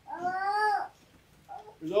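A short, high-pitched voiced call lasting under a second, rising and then falling in pitch, followed near the end by a man's speech resuming.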